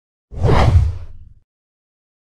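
Title-card whoosh sound effect with a deep low rumble under it. It starts abruptly and dies away after about a second.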